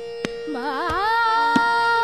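Female Hindustani classical khayal singing in Raag Shankara: about half a second in, the voice enters with a wavering, oscillating phrase that rises and settles into a long held note. A steady drone and a few sparse tabla strokes sound beneath it.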